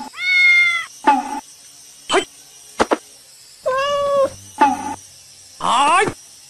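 A kitten meowing three times: a long meow at the start, another about four seconds in, and a rising cry near the end, with a few short clicks in between.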